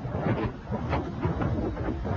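A low, continuous rumble with irregular crackling surges.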